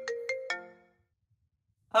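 Mobile phone ringtone playing a quick melody of struck notes. It stops about a second in when the call is answered.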